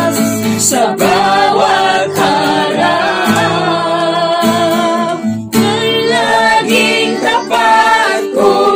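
Voices singing a song to an acoustic guitar played alongside, with a brief break in the singing about five and a half seconds in.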